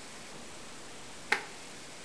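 A single sharp click about a second and a half in, as a wooden mock-up fitted with a Blum European concealed hinge is swung closed, over quiet room tone.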